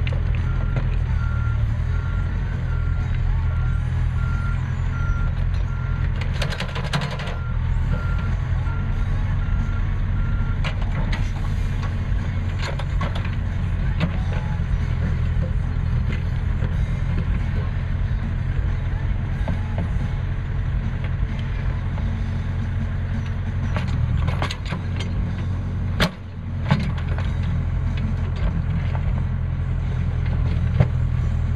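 Backhoe loader's diesel engine running steadily under load while its rear bucket digs a trench, with clanks and scrapes of the bucket and dirt. A backup alarm beeps repeatedly for about the first ten seconds. A sharp knock comes about 26 seconds in.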